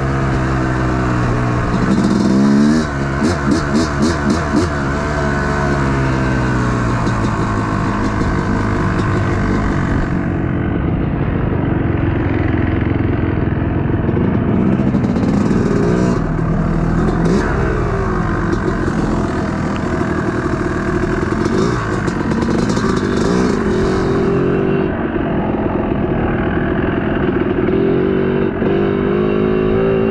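Yamaha YZ250 two-stroke dirt bike engine revving up and down repeatedly as it is ridden, rising and falling with the throttle. There are bursts of clatter about three to five seconds in and again around sixteen to eighteen seconds.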